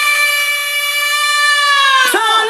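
A held electronic synthesizer note with many bright overtones in a beatless break of a dance track, its pitch sagging slightly near the end.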